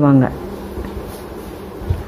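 A steady low hum under the pause in speech, after a short spoken word at the start.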